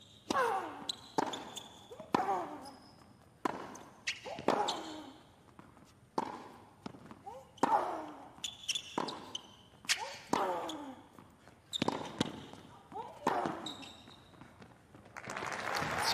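A long tennis rally on a hard court: about a dozen racket strikes, roughly one a second, most followed by a player's grunt falling in pitch, with shoe squeaks between. The crowd breaks into applause near the end as the point finishes.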